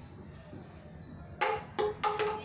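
An empty plastic water bottle flipped and landing on a tiled floor: two quick knocks with a short hollow ring, about one and a half seconds in, as it hits and settles upright.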